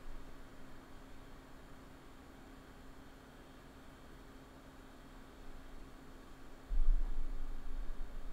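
Quiet room tone: a faint steady hiss with a low hum. About seven seconds in, a much louder low rumble starts.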